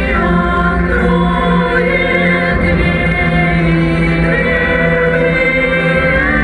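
Music with voices singing long held notes: a wavering high melody line over a steady low drone.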